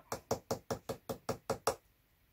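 A quick, even series of about nine knocks, about five a second, a finger or knuckle rapping on a hard surface, stopping near the end.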